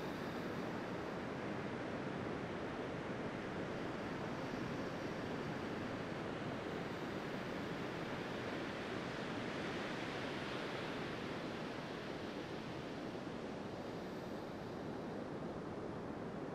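Sea surf on a sandy beach: a steady, even rush of breaking waves.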